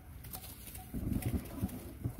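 Low cooing of a dove, a few short pulsed notes starting about a second in.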